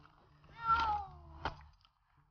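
A cat stranded up a tree meowing once: one long call, falling in pitch, lasting about a second. A sharp click comes near the end.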